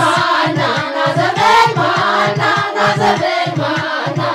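A mixed group of men and women singing a traditional Ethiopian song together, over a steady low drum beat of about three to four beats a second.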